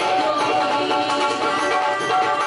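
Live devotional jagran music: a band led by an electronic keyboard playing held melodic notes at a steady, loud level.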